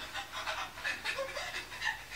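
Quick, even panting breaths, one after another.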